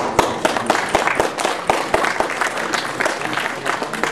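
An audience applauding: many hands clapping together in a dense, irregular patter.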